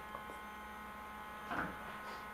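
Low, steady electrical hum from the ozone generator and analyzer setup, with a faint click shortly after the start and a brief soft handling noise about one and a half seconds in.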